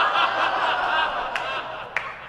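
Audience laughing, fading away near the end.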